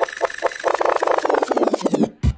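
DJ effect on a grime instrumental: the beat is stripped of its bass and a short slice is repeated in a rapid stutter that speeds up into a build, with a steady high tone held over it. It cuts off sharply at the end.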